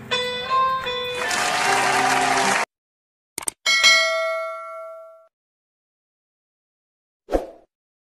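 The song's backing music ends and cuts off suddenly. Then comes a stock subscribe-button sound effect: two quick mouse clicks and a bright notification-bell ding that rings out for about a second and a half. A short sound follows near the end.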